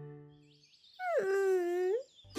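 A cartoon character's sad, wordless moan. It starts about a second in, drops in pitch, then holds. Before it, the last of the theme jingle fades away.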